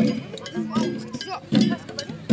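Traditional Garo Wangala dance music: sharp drum and metal gong strikes with voices over them. The loudest strike comes about a second and a half in.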